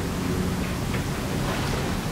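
A steady, even hiss with no rhythm or pitch, holding at one level throughout.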